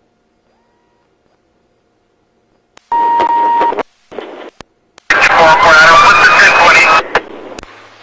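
Police radio channel: near silence, then about three seconds in a radio transmission opens with a short steady beep lasting under a second over static. About five seconds in comes a burst of garbled radio voice.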